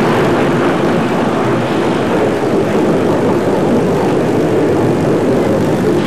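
Glasgow Subway train running, a steady, loud mechanical noise with no break.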